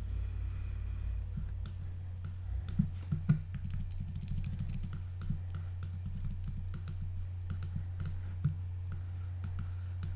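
Scattered light clicks of a computer mouse and keyboard, a couple of them louder about three seconds in, over a steady low electrical hum.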